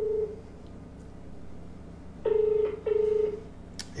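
Australian telephone ringback tone on a recorded call, the double-ring cadence of a line ringing unanswered. The tail of one double ring ends just after the start, and a full double ring of two short tones comes a little over two seconds in.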